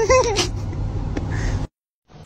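A short, wavering high-pitched cry, meow-like, lasting about half a second at the start. Background noise follows and cuts off suddenly near the end.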